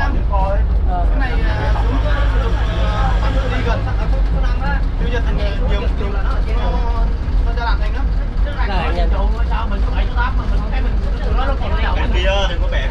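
Continuous low engine and road rumble heard from inside the back of a truck, with a steadier engine hum for a few seconds near the start. Several people talk over it the whole time.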